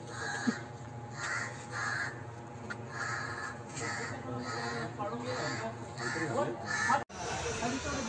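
Crows cawing over and over in a long series of short calls, over a background of distant voices; the sound changes abruptly about seven seconds in.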